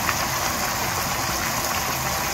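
Chicken and vegetables simmering in sauce in a frying pan, a steady bubbling sizzle.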